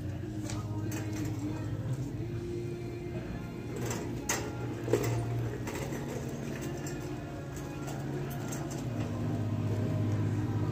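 Shop-floor ambience: faint background music over the store's speakers, its low notes held and shifting now and then, with a shopping cart rattling lightly as it is pushed along.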